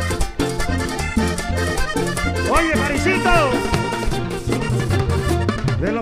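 Live vallenato band playing: a diatonic button accordion leads over a steady bass line and percussion.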